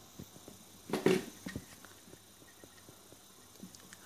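Faint handling noise from wiring a switched socket: a few light clicks and knocks of the cable cores and the plastic socket plate, with a brief rustle about a second in.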